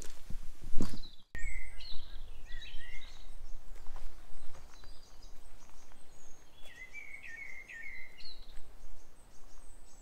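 Wild bird song: short chirping, warbling phrases in two bursts, one about a second and a half in and another around seven seconds, over a steady low background rumble.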